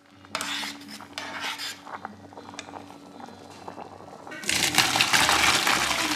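Background music with held low notes; about four and a half seconds in, a loud rush of cooked pasta and water poured into a colander in a stainless steel sink.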